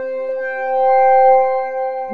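FB-3200 software synthesizer, an emulation of the 1978 Korg PS-3200, playing its 'Dark Blow' brass preset: one sustained note that swells in loudness about a second in and eases off again.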